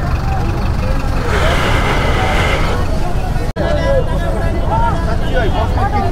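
Busy street: scattered voices of a passing crowd over steady traffic rumble, with a brief hiss about a second in and a momentary dropout just past halfway.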